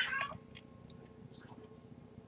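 A single short, high-pitched cry rising in pitch at the very start, then a quiet room with a few faint clicks.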